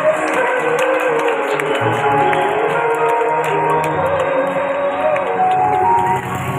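Live choral music: a choir singing a slow, sustained melody over held chords, the lead line wavering and rising and falling, with no pauses.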